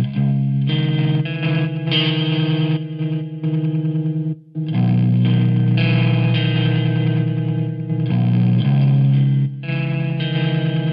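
Electric guitar played through a BlackSkyCraft Sunbros pedal, a modulated broken-spring-reverb effect, giving a loud, distorted, washy sound. Strummed chords ring on, stop briefly about four and a half seconds in, then start again.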